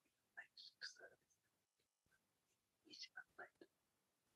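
Faint, soft-spoken speech, close to a whisper, in two short snatches over near silence; the second ends with "Right."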